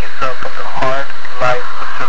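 Speech: a voice talking loudly throughout, the words not made out.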